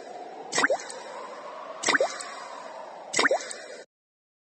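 Water-drop ringtone: a quick pair of plops, each rising in pitch, repeating about every 1.3 seconds over a soft sustained backing, three times. It cuts off suddenly near the end.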